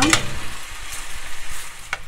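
Metal slotted spoon stirring penne and corned beef in a hot pan, with a steady sizzle from the pasta water just added around the edges. The spoon scrapes the pan just after the start and again near the end.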